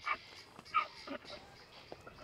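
A dog whimpering in a few short, faint whines.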